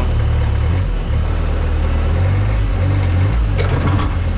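Skid-steer loader's engine running in the cab, a steady low drone whose level shifts a few times as the machine's controls are tried.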